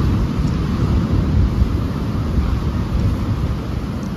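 Wind on the microphone: a steady, uneven low rumble.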